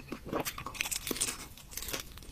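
Close-miked eating: a person biting and chewing crunchy food, a string of short crackling crunches.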